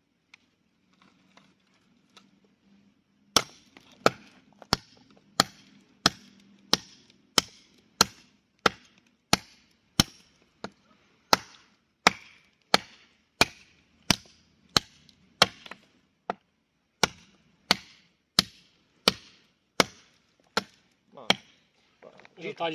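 A large fixed-blade knife chopping into a dry wooden pole: a long run of sharp, evenly paced strikes, about one and a half a second, starting a few seconds in with a short pause about two-thirds of the way through.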